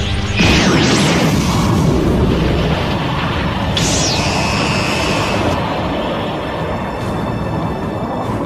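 Animated energy-blast explosion sound effect: a sudden boom about half a second in, then a sustained rumble. A high falling swoosh comes about four seconds in. Dramatic background music plays underneath.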